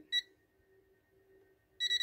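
TESMEN TM-510 multimeter's buzzer beeping in non-contact voltage mode, signalling that it has detected the AC voltage in a live mains cable held near it. A single short high beep comes just after the start, then it is nearly quiet until a rapid run of beeps begins near the end.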